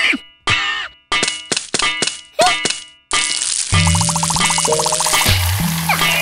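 Cartoon sound effects: a quick series of metallic clangs, each left ringing, over about three seconds. Background music with a steady bass line then begins and carries on.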